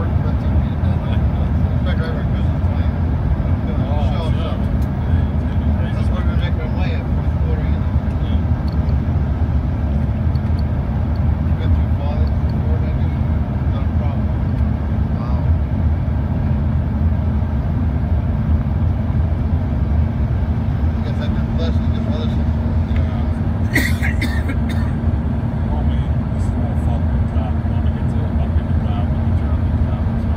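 Steady cabin noise inside an Embraer ERJ 145 on approach: the drone of its rear-mounted Rolls-Royce AE3007 turbofans and airflow, with a steady low hum. A brief clatter about four-fifths of the way through.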